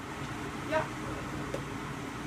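Steady low hum and hiss of kitchen background noise, with a short spoken "yeah" under a second in.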